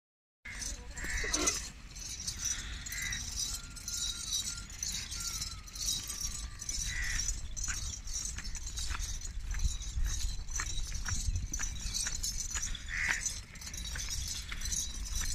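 A herd of goats walking past on a dirt track: many hooves ticking and scuffing in an irregular patter over a steady low rumble, with a few short calls.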